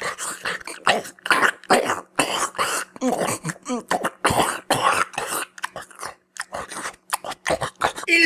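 Close-miked eating sounds from a lobster mukbang: irregular smacking, slurping and chewing bursts, with a few short throaty, grunt-like vocal sounds about three seconds in.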